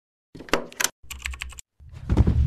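Rapid keyboard-typing clicks in two short runs, part of a logo intro sound effect, followed near the end by a deep boom that begins to swell.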